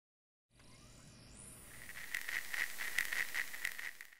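Faint intro sound effect under the channel logo: a hiss fades in, then a high chirping tone pulses about four times a second and cuts off suddenly at the end.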